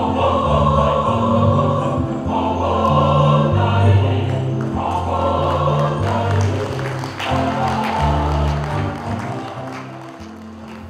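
A mixed choir of men's and women's voices singing in harmony, moving between long held chords; the singing fades lower near the end.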